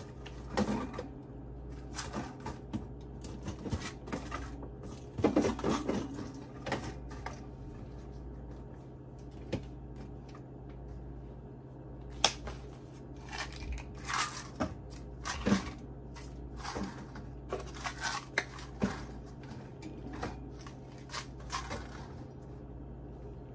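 Plastic tubs and containers being handled and set down on refrigerator shelves: a string of light knocks, taps and rustles, busiest about five seconds in and again over the second half, over a steady low hum.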